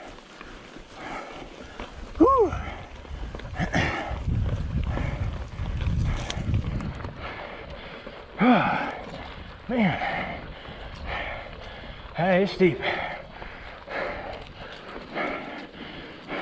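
Hardtail mountain bike rolling over a dirt double track: low tyre and trail rumble with a sharp click about six seconds in. Over it come several short vocal sounds from the rider that rise and fall in pitch, the loudest about two, eight and twelve seconds in.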